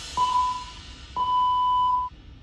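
Workout interval timer beeping at one steady high pitch: a short beep just after the start, then a longer beep from about a second in, the countdown signal that an exercise interval is ending.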